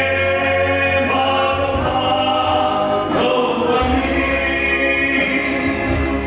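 A man singing a gospel song through a microphone and PA, over sustained electronic keyboard chords and a steady bass.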